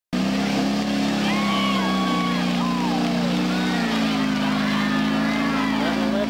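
Off-road mud-racing vehicle's engine held at high, steady revs as it churns through a mud pit, with people's voices calling out over it.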